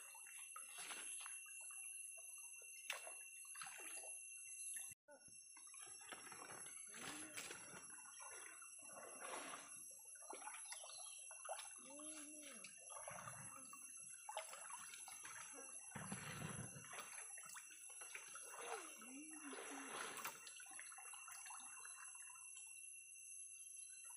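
Faint splashing and sloshing of shallow stream water as a person wades and moves her hands through it.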